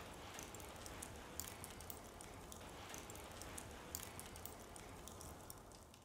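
Faint fire crackling: scattered soft ticks over a low hiss.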